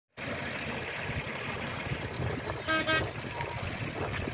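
Floodwater rushing steadily across a road, with two short horn beeps in quick succession about two and a half seconds in.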